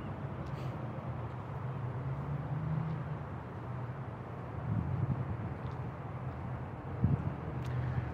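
Steady low hum of an idling vehicle engine under even outdoor background noise.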